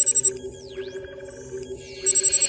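Electronic logo sting: steady synth tones under repeated sweeping pitch glides, with a brief rapid stuttering glitch burst at the start.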